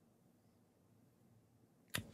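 Near silence: room tone, with one short sharp click near the end.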